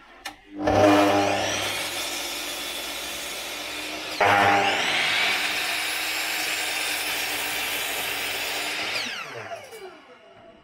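Bosch mitre saw switched on, its motor spinning up with a rising whine and running free for about three seconds. The blade then cuts through a piece of wood, sharply louder, for about five seconds, and the motor winds down with a falling whine near the end.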